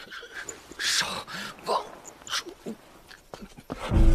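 A wounded man's gasping breaths and short moans, in quiet bursts, the sounds of someone badly hurt.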